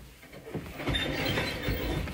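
Footsteps on timber floorboards with a rustling, scraping noise in the second half, as a timber door is pushed open.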